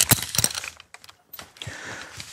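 A quick run of sharp metallic clicks and light clatter in the first half second or so, then a few fainter ones. These come from rope-access hardware being handled: a rope backup device and steel carabiners knocking together as the device is fitted onto the rope.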